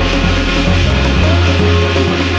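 Loud, dense Korean shamanic gut ritual music, with steady low tones that shift about a second in.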